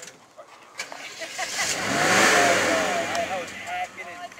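Off-road 4x4 driving past close by on a dirt trail: the engine swells and rises in pitch, then falls away, with tyre and gravel noise loudest about two seconds in.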